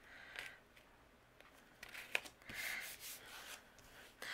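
Faint rubbing and sliding of cardstock on a tabletop as a teal panel is shifted and squared on a card base, with a light tick about two seconds in.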